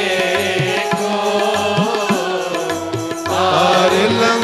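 Sikh devotional simran chanting sung to music, with steady held instrumental notes and tabla strokes underneath.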